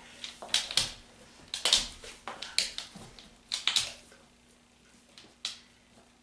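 Scattered sharp clicks and taps, about a dozen, thinning out after the first four seconds: a large shepherd dog's claws on a smooth hard floor as it moves about.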